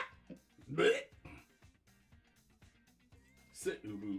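A man's brief wordless vocal sound about a second in, then quiet until a voice starts again near the end.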